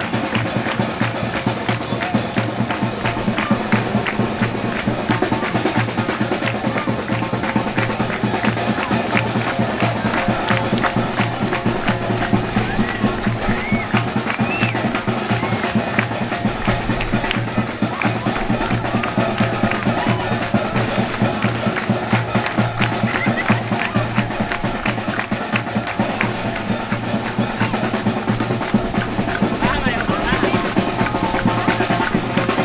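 Parade band music with drums, including a bass drum, beating a steady fast rhythm under sustained melody.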